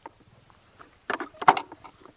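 A few short clicks and knocks as the Geiger counter's probe is handled in its case bracket, with the loudest knock about one and a half seconds in.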